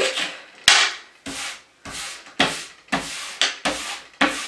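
Hands rubbing and pressing ornament-kit dough against a tabletop, a series of about seven short scraping strokes.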